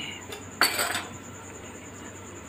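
A brief scraping clatter of a kitchen utensil against cookware, about half a second in, while thick kheer is being stirred in the pan.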